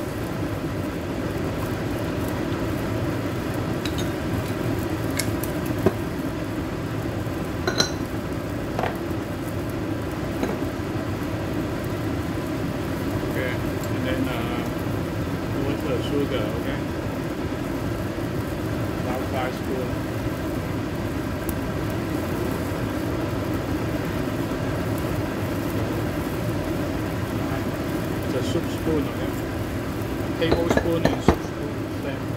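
A steady low hum of kitchen background noise, with a few brief light clicks about six and eight seconds in and scattered later.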